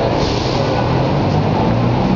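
Busy city street traffic: a loud, steady wash of road noise with the low drone of vehicle engines.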